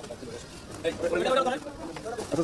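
Indistinct voices of people talking, one voice coming up louder about a second in.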